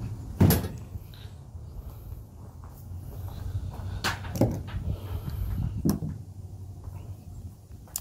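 Knocks and clunks on a pickup truck's tailgate and bed: one sharp, loud clunk about half a second in, then a few lighter knocks around four to six seconds in, over a low steady rumble.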